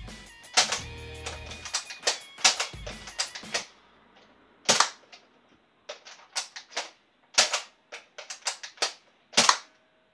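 A Nerf dart blaster being worked and fired in a small room: a run of about a dozen sharp, irregularly spaced plastic clicks and snaps, some close together, with darts hitting the wall. Background music plays under the first three and a half seconds, then drops out.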